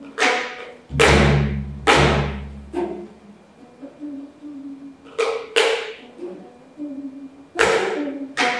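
Geomungo, the six-string Korean zither, struck and plucked with a bamboo stick: sharp stroke attacks that ring and fade, with held low notes between them. The two strongest strokes come about a second apart near the start with a heavy low thud under them, then sparser strokes, a pair around five seconds in and another near the end.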